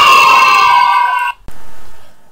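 An animal call played as a sound effect: one long, high-pitched cry lasting about a second and a half, which cuts off, followed by a click and a brief quieter sound.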